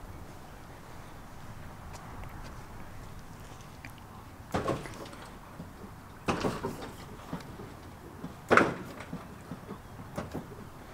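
Lowrider hydraulic suspension being let down: three sharp clunks, about two seconds apart, the last the loudest, over a faint steady background.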